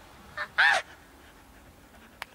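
A man's brief high-pitched yelp, rising and falling, about two-thirds of a second in, with a fainter short squeak just before it, over quiet street background.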